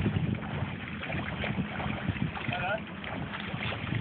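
Wind buffeting the microphone over shallow sea water around an inflatable raft, with faint voices in the background about halfway through.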